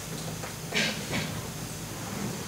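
Steady background hiss in a pause between recorded voices, with two short, soft hissing sounds about three-quarters of a second and just over a second in.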